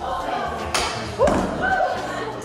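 Women's voices talking indistinctly, with a single sharp thump a little under a second in.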